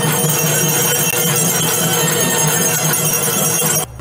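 Bells ringing steadily over festive music, a dense continuous din that cuts off abruptly just before the end.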